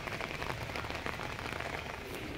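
Rain pattering steadily on a wet paved road and puddles, a dense even crackle of small drops.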